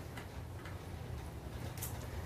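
Quiet room tone through the lecturer's microphone: a steady low hum with a few faint clicks, one a little sharper near the end.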